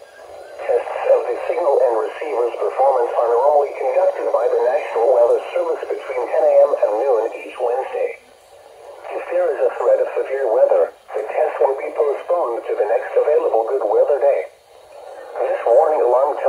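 Speech only: the NOAA Weather Radio announcer voice reading the weekly test announcement, heard through a Midland weather alert radio's small speaker, thin and narrow in tone, with pauses about eight seconds in and near the end.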